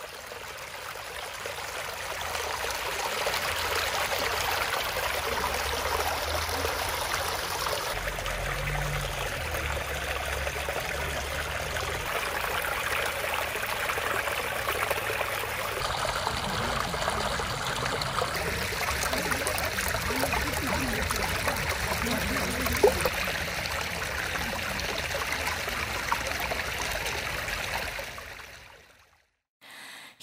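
Shallow mountain stream running over rocks: a steady rush of water that fades in over the first few seconds, shifts in tone a couple of times, and fades out near the end.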